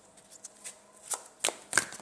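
A deck of tarot cards shuffled by hand: a run of quick, short card slaps, sparse at first and then denser and louder in the second half.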